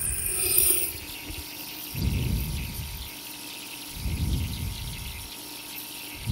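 Nebulizer switched on and running with a steady hiss of mist, while slow breaths are drawn through its mouthpiece about every two seconds.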